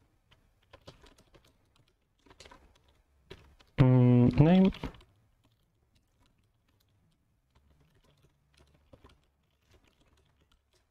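Computer keyboard typing: scattered, fairly faint key clicks. About four seconds in, a short wordless vocal sound of about a second, rising in pitch at its end, is the loudest thing.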